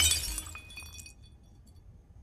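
Glass shattering: the crash at the very start, then pieces tinkling and ringing, dying away about a second in.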